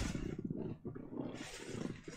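Rustling and shuffling handling noise as a person bends down from her seat to reach for something, with a brief louder rustle near the end.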